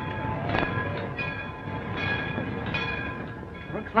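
Railway train sound at a station: a steady low rumble with short, repeated high tones over it and a single clank about half a second in.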